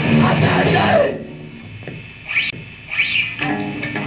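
Lo-fi 1983 hardcore punk demo recording: the full band plays loudly, with vocals, then cuts off about a second in. A quieter couple of seconds of scattered short sounds follows before the band comes back in at the very end.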